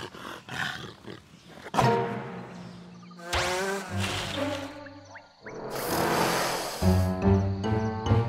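Cartoon soundtrack: background music with a cartoon tiger's roar. A rushing sweep of noise follows about two-thirds of the way in, and a rhythmic music beat starts near the end.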